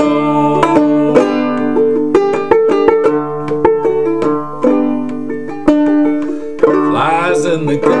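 Gold Tone banjo with Nylgut strings, tuned aDADE, played clawhammer style: a steady rhythm of plucked, ringing notes. A man's singing voice comes in near the end.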